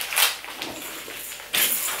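Cloth baby bib rustling as it is handled and fastened around a baby's neck: a short scratchy burst just after the start, and a louder, longer one near the end.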